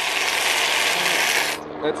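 Aerosol can of whipped cream spraying in one continuous hiss, which cuts off suddenly about a second and a half in.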